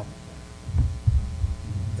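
Steady electrical hum from the sound system, with a short cluster of low thumps about a second in.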